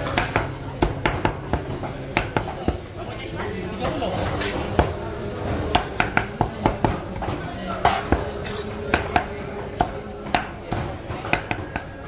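Knife and cleaver striking a thick round wooden chopping block while a whole raw chicken is cut into pieces: a run of sharp, irregular knocks, sometimes several a second.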